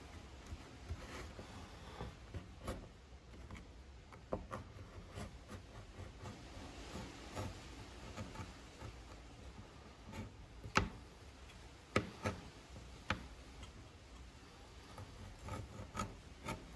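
Box-cutter blade drawn through thick leather in repeated shallow strokes to deepen a cut: faint scraping and rubbing, with a few sharper clicks near the end.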